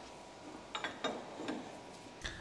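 A few light metallic clicks and clinks from a railway carriage's air-brake hose coupling being handled.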